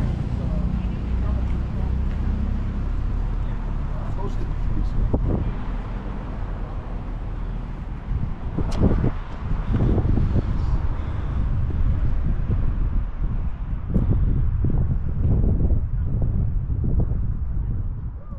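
Wind rumbling on the microphone, in irregular gusts that grow stronger about halfway through, with indistinct voices of people in the background.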